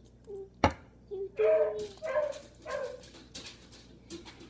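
A toddler's short, high-pitched wordless vocal sounds, three or four in a row, with a single sharp knock just before them.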